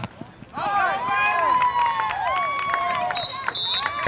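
Several young men shouting and hollering over one another, their voices rising and falling and overlapping, with a brief high steady tone near the end.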